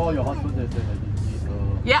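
Steady low hum of a car's cabin, under a voice and background music.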